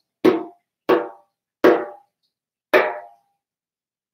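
Four hand strikes on a djembe, each ringing briefly and dying away, spaced a little further apart each time; the last falls about three seconds in.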